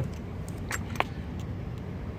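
Two short clicks from a push-button key lockbox being opened, the second one sharper, over a steady low rumble.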